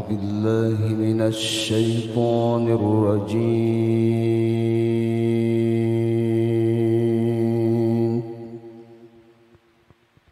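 A male qari chanting a Qur'anic recitation (tilawah) into a microphone. He sings ornamented melodic runs, then holds one long note for about five seconds. The note stops a little after eight seconds and dies away over the last two seconds.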